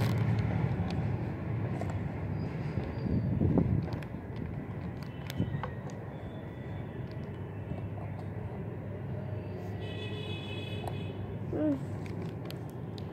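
Wind buffeting the phone's microphone outdoors: a low, gusting rumble that swells about three seconds in, with a few faint clicks.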